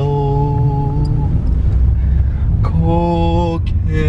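Music with a singer holding long, steady notes in a Hawaiian-language song: two held notes, the second starting near three seconds in, over the steady low rumble of a car's road noise inside the cabin.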